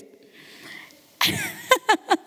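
A woman's voice close to a handheld microphone: a faint intake of breath, then a little over a second in a sudden, loud, breathy outburst, followed by short voiced sounds.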